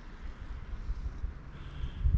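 Wind buffeting the microphone outdoors: an uneven low rumble with a faint hiss above it.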